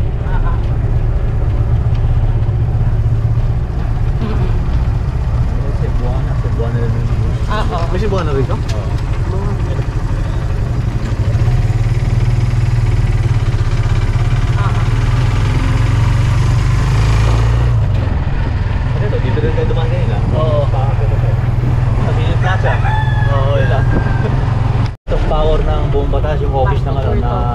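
Motorcycle engine of a sidecar tricycle running steadily as it cruises along, a continuous low rumble. The sound cuts out for a split second near the end.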